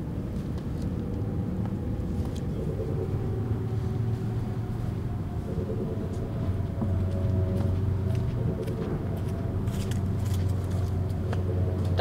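A steady, low mechanical drone with a few steady tones above it, growing stronger about halfway through.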